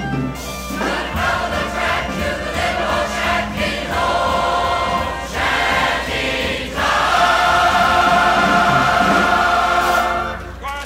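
Choir singing a song live, closing on a long held chord over the last three seconds that breaks off at the end.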